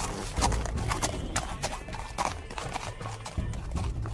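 Horse hooves clip-clopping at a walk, an uneven run of hoof strikes about three a second, used as a radio-drama sound effect.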